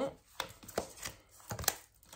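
Santa Muerte tarot cards being handled: a card is drawn from the deck and laid down on the table, giving about five short taps and card snaps.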